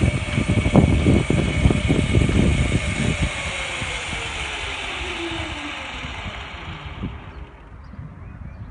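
Greyhound track's mechanical lure running along its rail, with a motor whine that falls in pitch as it slows about halfway through, over irregular low rumbles in the first few seconds. The whole sound fades away near the end.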